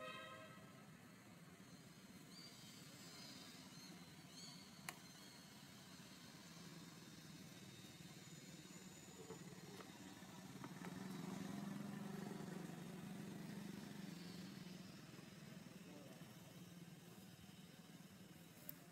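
Faint low engine drone of a distant vehicle, swelling about ten seconds in and fading again. A single sharp click about five seconds in.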